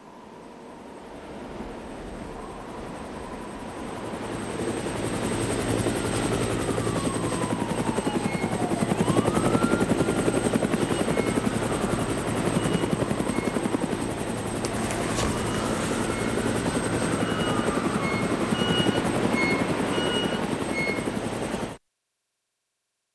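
Helicopter overhead, its rotor chop swelling over the first few seconds and then holding steady, with a few faint gliding tones above it. The sound cuts off suddenly near the end.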